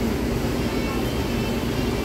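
Fast-food restaurant ambience: a steady low rumble of room noise with indistinct voices in the background.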